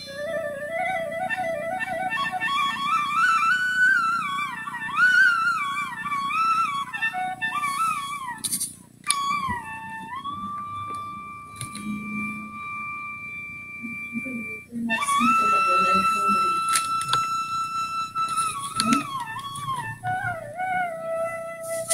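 Solo flute playing a slow melody with gliding, ornamented phrases. After a brief break a little before halfway, it holds long steady notes.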